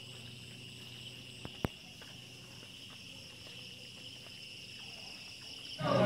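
Night insects chirring in a steady chorus held on a few high pitches, with a single sharp click about a second and a half in.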